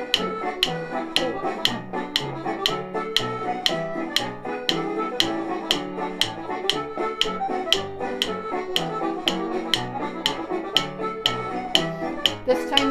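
Wooden drumsticks clicked together in a steady beat of about two taps a second, tapping in fours along to a music track.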